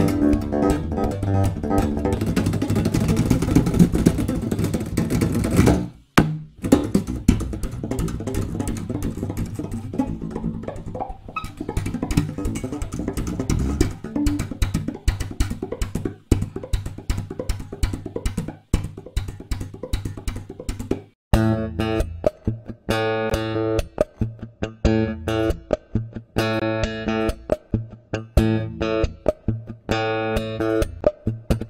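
Zon electric bass played solo with percussive slap and plucked strokes. About twenty seconds in, the playing turns to clearly pitched, ringing notes in a steady rhythm.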